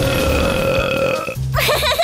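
Cartoon burp sound effect for a kitten breathing fire, one long burp lasting about a second and a half over background music. Near the end a high, wavering cartoon voice begins.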